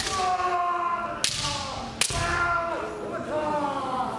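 Bamboo shinai strikes in a kendo exchange: three sharp cracks, one at the start, one just past a second in and one at two seconds, with the fencers' long, drawn-out kiai shouts falling in pitch between and after them.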